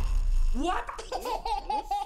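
A high-pitched animated character's voice giggling in quick, repeated rising-and-falling notes, starting about half a second in, after the trailer's music and noise cut off.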